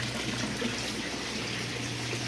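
Water pouring in steady streams from overhead pipes into a large tank of water, a continuous splashing, with a steady low hum underneath.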